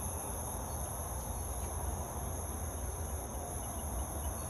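Crickets chirring in a steady, high-pitched night chorus, over a low rumble.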